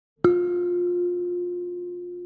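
A single kalimba note plucked just after the start, ringing with a bell-like tone and slowly fading.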